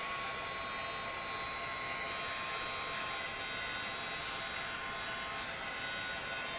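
Steady whirring hum with a faint high-pitched whine: an electric fan-type room noise running evenly, with no separate knocks or clicks.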